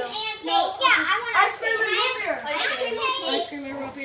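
Children's voices chattering and talking over one another, with no words clear enough to make out.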